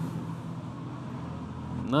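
Steady low room noise with a faint hum during a pause in a man's speech; his voice comes back near the end.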